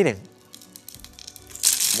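A blade cutting through a bar of white soap scored into small cubes, the cubes breaking off with a dense, crisp crackle that starts loud about one and a half seconds in.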